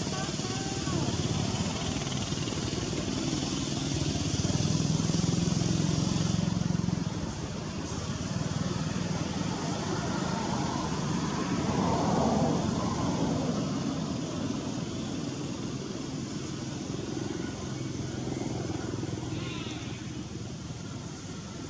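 Motor vehicle engines running, swelling louder about a quarter of the way in and again just past the middle as they pass, over a steady high hiss.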